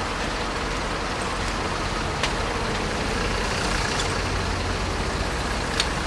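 A vehicle engine idling steadily, with two short clicks, one about two seconds in and one near the end.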